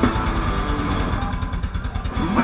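Live metal band playing loud: distorted electric guitars over bass and drums, the sound thinning out in the highs for a moment near the end.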